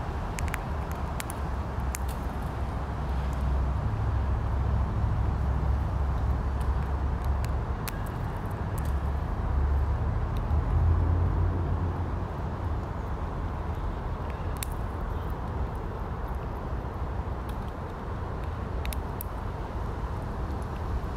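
A Eurasian red squirrel cracking pine nut shells with its teeth close by, heard as a scattering of sharp cracks about a dozen times. Under them runs a steady low background rumble, the loudest sound, which swells slightly in the middle.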